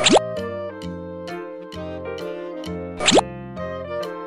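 Cheerful children's background music with a bouncy melody and bass line. A quick rising swoop sound effect comes twice, once at the start and once about three seconds in.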